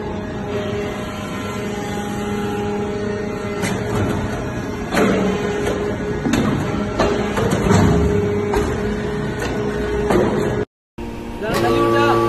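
Hydraulic iron-chip briquetting press running: the steady hum of its hydraulic power unit, with irregular metallic knocks and clanks as the ram presses iron chips and briquettes are pushed out.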